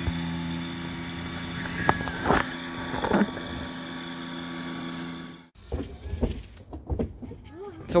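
Kubota BX2660 compact tractor's diesel engine running steadily while the front loader lifts out an uprooted bush, with a few sharp cracks about two and three seconds in. The engine sound cuts off suddenly about five and a half seconds in, leaving only a few faint sounds.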